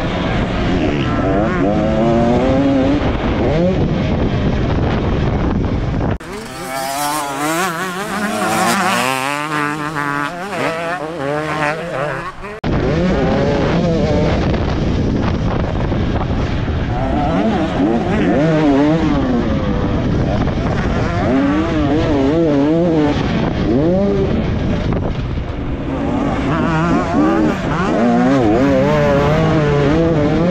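Two-stroke engine of a 2024 KTM 250 SX motocross bike, heard from its onboard camera, revving up and down over and over with throttle and gear changes. From about six seconds in, the sound abruptly loses its low end and turns thinner and higher for about six seconds, then returns to the full engine note.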